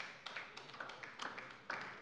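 Faint, sparse clapping from a few people, a handful of separate sharp claps or taps.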